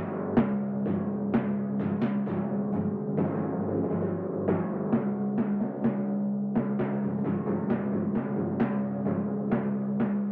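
Timpani being played: a steady run of separate mallet strokes, about two a second, each ringing on under a held low note.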